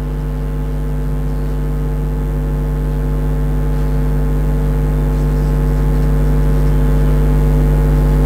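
Steady low electrical hum with a stack of overtones, growing slightly louder.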